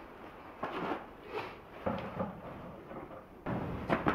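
A few quiet, short knocks and clatters as a hard plastic mineral feeder is handled.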